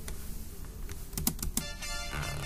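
A few faint clicks from computer keys or a mouse in a quiet room, with faint music coming back in near the end.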